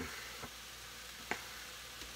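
Faint, steady sizzle of diced chicken, mushrooms and vegetables sautéing in olive oil in a pot on the stove, with two small clicks.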